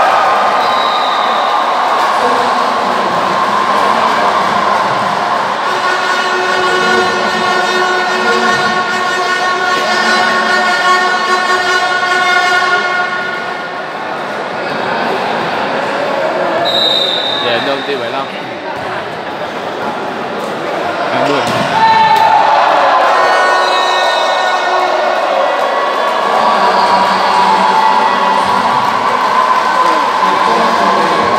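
Volleyball match sound in an echoing sports hall: a ball being hit and bouncing on the court, over a steady noise of crowd voices. Long, steady horn-like tones are held for several seconds twice, first for about seven seconds starting a few seconds in, then again from about two-thirds of the way through.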